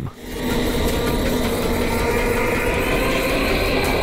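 Background music, a steady droning bed that swells in about half a second in and then holds level.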